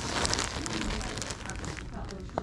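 Clear plastic packaging crinkling and crackling in the hands as a wrapped blanket is handled, densest in the first half second and then lighter ticks.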